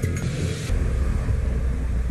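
A deep, steady low rumble with a faint hiss above it, which thins out a little under a second in: a bass drone in the TV show's soundtrack.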